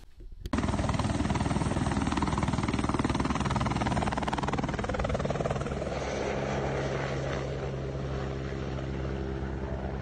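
A helicopter running close by, its rotor beating rapidly over a dense wash of noise. A steady low drone with several held tones comes through more clearly from about six seconds in.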